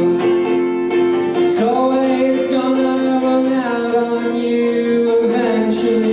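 A man singing long held notes while strumming an acoustic guitar, a live solo song.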